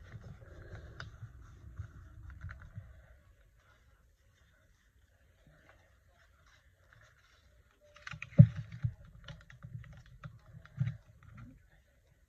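Fingers rubbing a glued paper circle down onto a sketchbook page: a soft scratchy rubbing with small clicks for about three seconds. After a quiet gap, a run of light clicks and knocks from handling on the table starts about eight seconds in, the loudest of them near its beginning.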